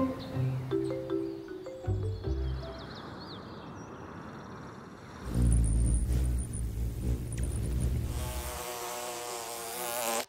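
A few held music notes fade, and about five seconds in a loud low buzzing wing hum starts: a hovering hummingbird, then a bumblebee buzzing near the end.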